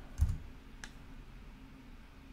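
Two computer keyboard keystrokes: a louder click with a low thud about a quarter second in, then a lighter click just under a second in.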